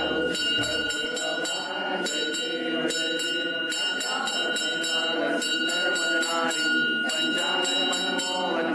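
Temple bells rung rapidly in quick repeated strokes through an aarti, with a steady high ringing tone beneath and a crowd of voices singing together.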